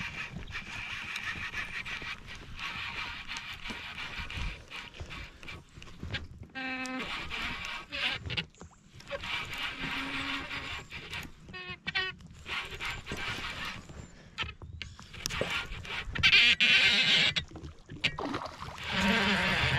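A hooked pike being fought on a baitcasting rod from a kayak: reel and line working, with a couple of short buzzing pulls. A loud splash from the thrashing fish comes near the end.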